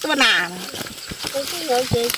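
A woman talking, with a few short sharp snaps between her words as a large knife cuts through the stalks of leafy greens.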